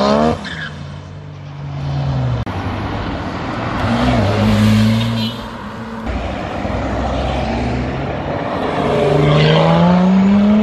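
Performance car engines revving and accelerating as cars pull away one after another. A hard rev ends within the first half-second, then engines run at steady notes, and a rising engine note builds near the end.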